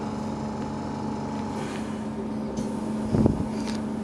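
Steady machine hum holding a low and a higher tone, with a brief low thump about three seconds in.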